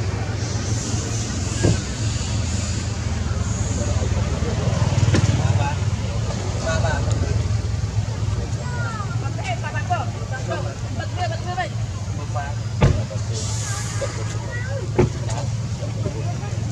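Steady low engine-like rumble, with faint, unclear voices and chirps over it and a few sharp knocks, the loudest about 13 seconds in.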